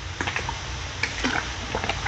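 Typing on a computer keyboard: a quick, irregular run of key clicks over a low, steady hum.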